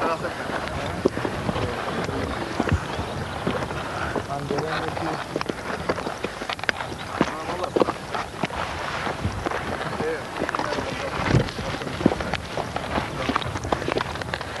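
Indistinct voices over a steady rush of wind-like outdoor noise, with scattered sharp knocks and clicks, the loudest about eleven seconds in.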